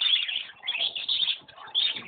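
Many small caged birds chirping and twittering at once, a dense high-pitched chatter that goes on without a break.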